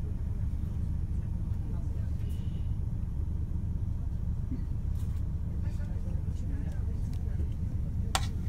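Steady low engine and road rumble heard from inside a slowly moving vehicle.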